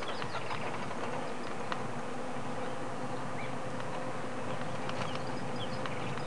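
Outdoor bush ambience: a steady low drone with many short, high chirps and clicks scattered through it.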